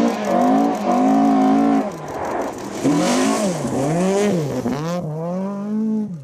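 Rally car engine at high revs on a gravel stage. Its pitch holds high, then dips and climbs several times as the car slows and accelerates again through a bend.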